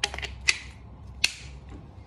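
Sharp clicks of a brass quick-connect plug and hose coupler being pushed together and snapped into place: three clicks, the loudest about half a second in.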